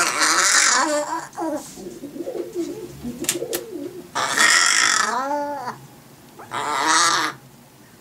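A pet crow giving three loud, harsh calls, the longest about four seconds in, its pitch arching down at the end, while it raises its wings in a display. Softer, lower cooing-like warbling runs between the calls.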